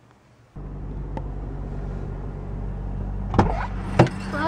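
Car engine running, a steady low hum heard inside the cabin, starting abruptly about half a second in. A sharp knock comes near the end.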